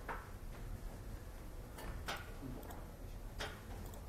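Four or five faint, sharp clicks at irregular intervals from a laptop's keys and touchpad as web pages are clicked through, over a steady low room hum.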